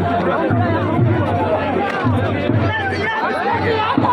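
A dense crowd of many voices shouting and talking over one another at close range, steady throughout.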